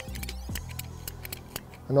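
Hand-held golf ball cutter being closed on a golf ball, its blade going through the ball with a few faint clicks, over quiet background music.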